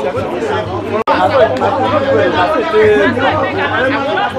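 Several people talking at once in loud, overlapping chatter, over a steady low hum. The sound cuts out for an instant about a second in.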